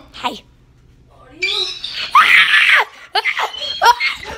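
A person screaming, loudest and harshest about two seconds in, amid other wordless cries with wavering pitch.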